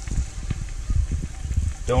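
Battered pike pieces frying in hot oil in a skillet, with a steady crackling sizzle. The oil is at about 375–380 degrees, and the sizzle is the cue that the temperature sounds about right. Irregular low thumps of handling sound under it.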